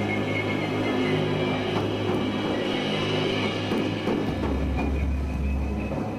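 Live metal band playing a slow, sustained atmospheric passage of held tones over a low bass drone; about four seconds in, the bass note drops lower.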